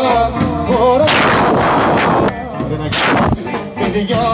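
Live band music with a man singing, amplified, broken by two loud bursts of noise that swamp the music: one about a second in that fades over a second or so, and a shorter one near three seconds.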